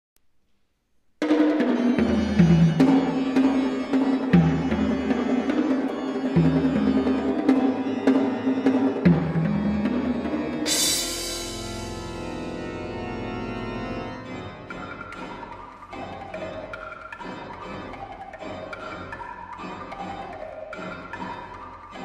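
Pipe organ and percussion playing a toccata. Loud held organ chords over repeated deep pedal notes come first. About 11 s in, a bright percussion crash rings away, followed by a quick run of short, detached notes.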